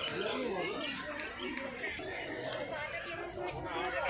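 Several people talking at once: overlapping conversational chatter, no single voice standing out for long.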